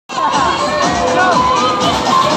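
A crowd of children shouting and squealing together as they play on an inflatable slide, many voices overlapping.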